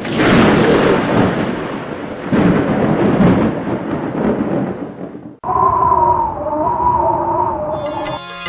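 Thunder-like rumbling noise that swells several times, then cuts off sharply about five seconds in and gives way to a held, slightly wavering pitched tone.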